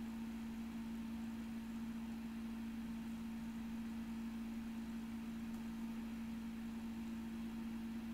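Quiet room tone: a steady low hum over faint hiss, with nothing else happening.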